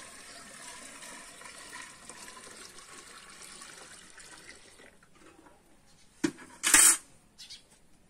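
Cold water poured from a metal bucket into the cooling pot of a homemade still, splashing steadily for about five seconds; this is the cooling water being renewed to keep the still's condenser cold. Near the end there is a sharp click and then a louder, short knock.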